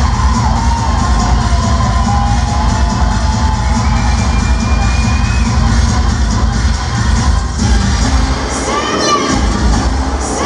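Loud dance music with a heavy pounding bass beat over a club sound system, with a crowd shouting and cheering over it. There are a few loud shouts near the end.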